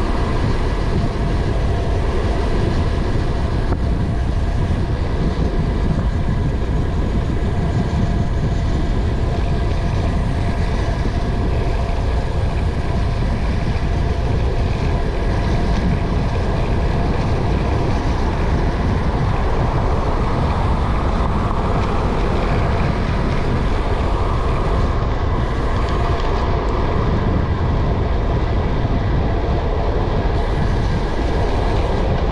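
Steady wind rumble on a handlebar-level action camera's microphone from a road bike moving at speed, with road noise.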